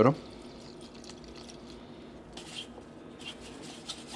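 Petrol poured from a metal can into a plastic tub, a faint trickle with a few soft splashes.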